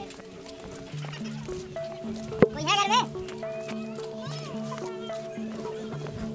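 A goat bleating with a quavering voice, loudest about two and a half seconds in, with fainter bleats after it, over background music of long held notes. A single sharp click comes just before the first bleat.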